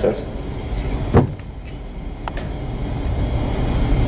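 Steady low rumble of room noise during a pause in speech, with a short falling sound about a second in and a faint click a little after two seconds.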